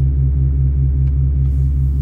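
A steady, loud, low vehicle engine idle rumble with a pulsing beat about five times a second.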